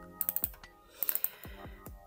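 Computer keyboard keys tapped while typing in numbers: a quick run of about four keystrokes early, then a couple more about a second in.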